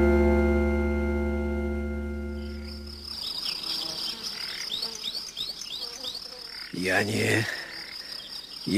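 A sustained organ chord fading away over the first three seconds, then insects chirping in a quick repeating pattern. A short low call comes about seven seconds in.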